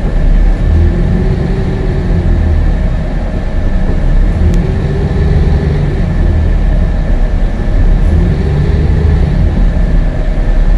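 Ride noise inside a moving city bus: a steady, loud low rumble of engine and road, with a thin steady high whine and a fainter tone that swells and fades every few seconds.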